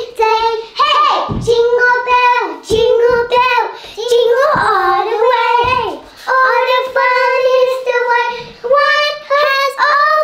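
Two young girls singing without accompaniment, in long held notes with short breaks, their voices overlapping at times.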